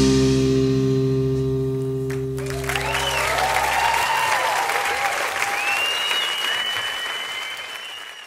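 The band's last chord rings on and fades away over the first few seconds. Audience applause rises under it, with cheers and a long whistle, and carries on to the end, thinning out.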